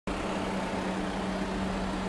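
Steady vehicle hum: an even hiss with a constant low tone.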